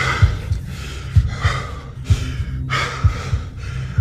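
A person panting hard, a quick breath repeating about every two-thirds of a second, with dull low thumps underneath.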